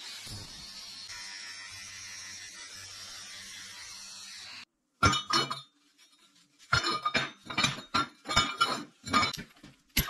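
A steady mechanical hiss with a low hum runs for about four and a half seconds and cuts off suddenly. Then come repeated sharp clinks and knocks of round steel tubes and small steel plates being set down and moved about on a steel welding table.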